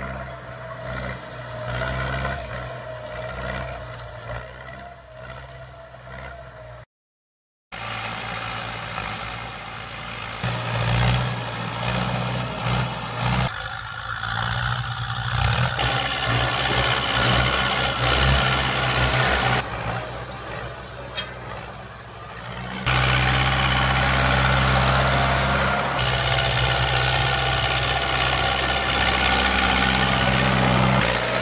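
Farm tractor diesel engines running under load while pulling disc tillers through dry soil, a steady engine drone. The sound drops out briefly about a quarter of the way in and becomes louder and steadier about three quarters of the way through.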